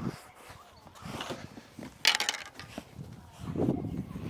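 A tennis ball tossed and slapped with an open palm, then a short, sharp rattling hit about two seconds in.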